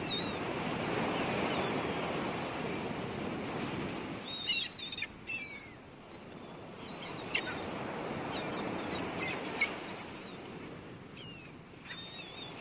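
Nature ambience of surf washing steadily, swelling over the first couple of seconds and then easing. Birds chirp in short calls several times in the second half.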